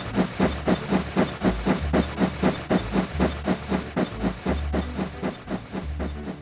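Steam locomotive chuffing, an even run of about four puffs a second, growing fainter near the end as the engine moves away.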